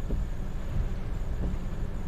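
Steady low rumble with a faint hiss above it, heard inside a car's cabin while a storm blows outside.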